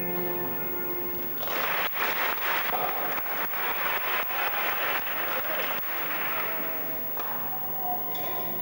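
Audience clapping starts about a second and a half in, swells, and dies away after about five seconds. Music fades out at the start, and new music begins near the end.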